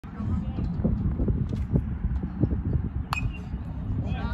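A metal baseball bat hitting a pitched ball: one sharp ping with a short ring about three seconds in, a hit driven to left field.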